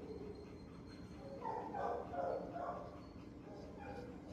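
A dog barking a few short times, from about one and a half to three seconds in, over a steady low hum of the kennel building.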